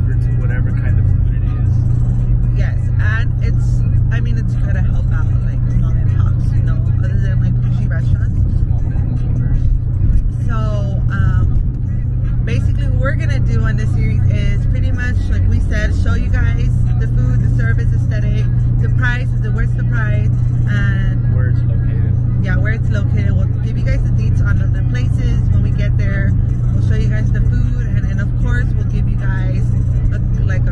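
Steady low rumble of a moving car heard from inside the cabin: road and engine noise under a woman's talking.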